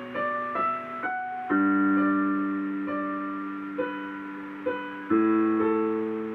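Digital piano played slowly: a short rising line of single notes, then a held chord struck about a second and a half in and another near the end, with single melody notes ringing out between them.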